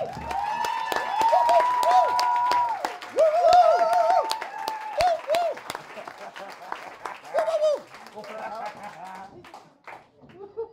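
A small audience clapping and cheering with loud whoops and shouts right after a song ends. The calls are strongest in the first few seconds, and the scattered claps die down over the last couple of seconds.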